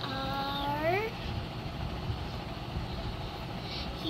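A single drawn-out vocal call, about a second long, that rises in pitch toward its end, over a steady low background hum.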